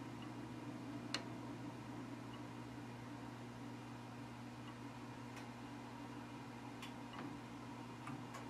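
Faint steady hum of a hydronic heating system's recirculating pump, with a few light ticks, the clearest about a second in.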